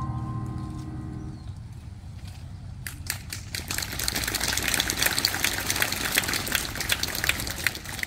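The choir's closing chord dies away, then audience applause starts about three seconds in and builds.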